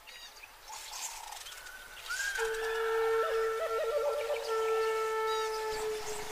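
Birds chirping. About two seconds in, a held flute-like musical note starts, with a short warble in it about a second later and higher held notes above it.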